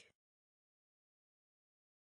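Near silence: a dead digital gap, broken only by the clipped end of a spoken word right at the start.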